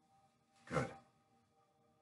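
A man's voice saying a single word, "Good," about two-thirds of a second in; otherwise near silence with faint steady tones in the background.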